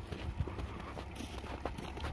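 Footsteps crunching irregularly on packed, slushy snow, a scatter of uneven crunches and knocks over a low rumble.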